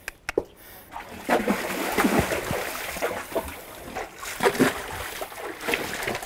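A yearling horse splashing about in the shallow water of a splash pool, irregular splashes beginning about a second in after a couple of sharp clicks.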